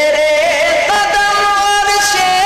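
Male voice chanting an Urdu devotional naat in long held notes, changing to a new held note about a second in.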